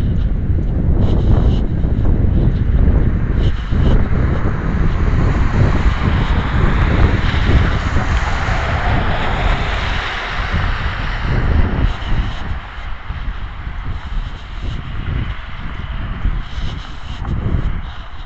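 Wind buffeting the microphone, a steady low rumble that gusts up and down. A car drives past on the street, its tyre and engine noise swelling and then fading in the middle.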